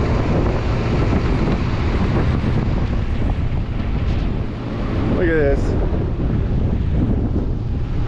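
Steady wind buffeting the microphone, a dense low rumble that holds throughout.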